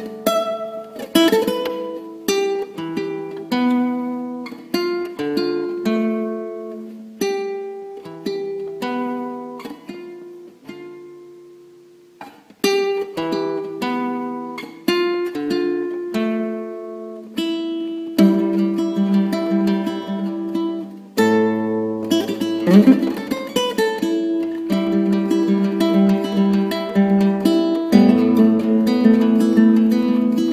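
Solo plucked-string instrumental music: picked single notes and chords, each ringing out and decaying. The playing thins and fades almost to nothing about twelve seconds in, then resumes and grows fuller and busier from about eighteen seconds.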